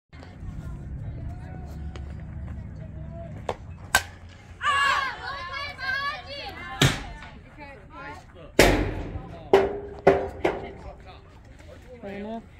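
A string of sharp cracks from a softball being hit and caught in infield practice. The loudest come in the second half, about five of them, some with a short ring. A player shouts loudly near the middle.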